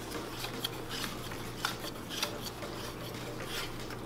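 Plastic cup-holder phone mount being twisted and adjusted by hand: faint scattered clicks and rubbing of the plastic base.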